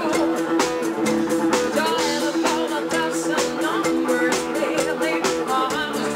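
Live band playing up-tempo disco-rock: a steady drum beat under electric guitar and keyboards.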